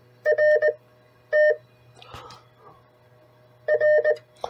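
A QRP CW transceiver's sidetone beeping in short Morse-like tones at one steady pitch: a quick group of beeps just after the start, a single beep about a second and a half in, and another group near the end. These are the rig being keyed as it is set to send a carrier.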